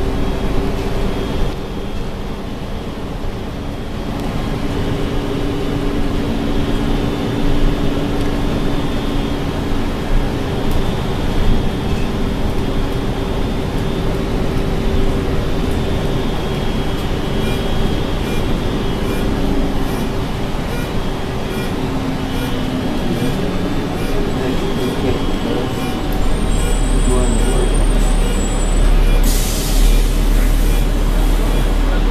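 Riding inside a moving city bus: steady engine and road noise with a low hum, the rumble growing heavier near the end, then a short hiss just before the end.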